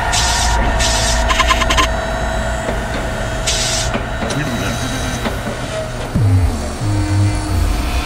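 Dark midtempo electronic track with heavy sustained bass and short bursts of noise in the first few seconds, then a low sliding bass wobble near the end.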